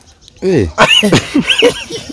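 A man laughing in a run of short bursts, starting about half a second in after a brief pause.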